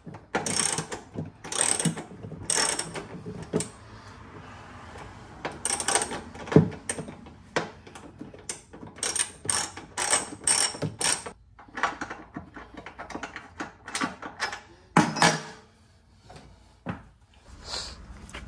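Hand ratchet with a T40 Torx socket clicking through repeated short back-and-forth strokes as it drives bed anchor-point screws, with a couple of brief pauses between runs.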